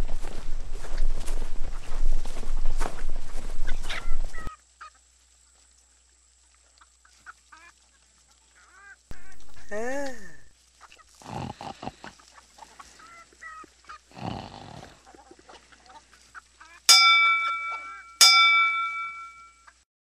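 Cartoon music that cuts off suddenly, then cartoon hens snoring and sighing in their sleep, ending with two rings of a bell about a second apart, each ringing out and fading.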